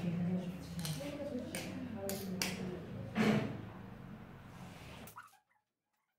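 Indistinct voices talking in the room, with a few sharp knocks of a knife chopping raw chicken on a stone countertop. The sound cuts off abruptly near the end.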